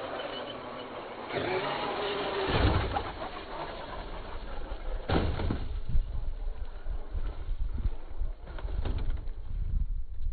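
Traxxas X-Maxx electric RC monster truck running over a dirt jump track. Its motor and drivetrain give a whine under throttle over the scrabble of its tyres on dirt, with sudden thumps, the loudest about two and a half seconds in and another around five seconds, among low rumbles.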